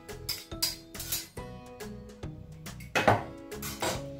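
Eggs being beaten in a bowl, the metal utensil clinking and scraping against it in a few irregular strokes, the loudest about three seconds in. Background guitar music plays throughout.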